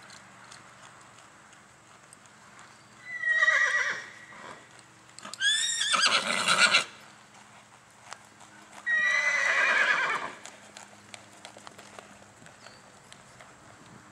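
A horse whinnying three times, the middle call the longest and loudest. Faint hoofbeats of a horse loping on arena sand run beneath.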